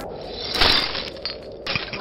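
Cartoon sound effect of ice cracking and shattering, loudest about half a second in, with a sharp crack near the end. It stands for the frozen valve's sacrificial disc breaking.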